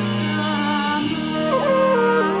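A woman singing a slow ballad over a sustained instrumental backing, holding long notes; her melody steps down in pitch in the second half.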